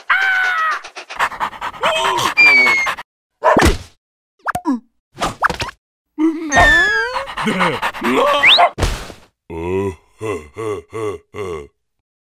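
Cartoon character vocalizations: a larva's wordless yelps, groans and squeals that bend sharply up and down in pitch, mixed with whack-like comic impact sounds. Near the end comes a run of five short, evenly spaced pulses.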